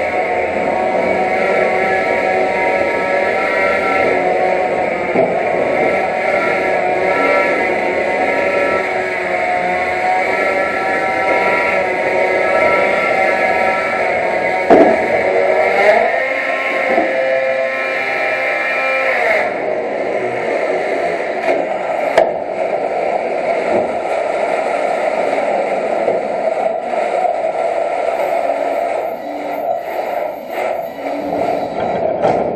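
Antweight combat robot's drive and weapon motors whining with a wavering pitch. There are a couple of sharp knocks from hits near the middle, and the higher whine cuts out about two-thirds of the way through.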